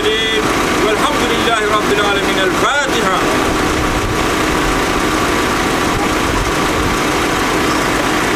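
A car engine idling steadily, with voices from the gathered crowd over it during the first three seconds.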